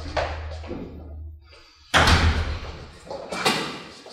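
A loud, sudden thump about two seconds in, followed by a second one about a second and a half later, each with a short ringing tail in a large room.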